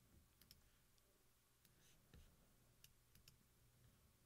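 Near silence with a handful of faint, scattered clicks from a computer mouse and keyboard in use.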